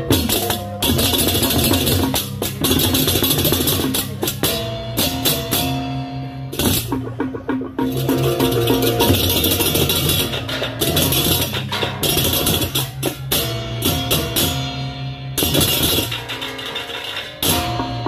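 Balinese baleganjur gamelan playing: pairs of ceng-ceng kopyak hand cymbals clashing in fast interlocking rhythm over kendang drums and gongs. The cymbals cut off sharply for short breaks several times, the longest about seven seconds in, before crashing back in.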